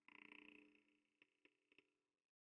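Near silence: a lit Proffie lightsaber's faint steady hum from its speaker fades out within the first second, followed by a few faint clicks.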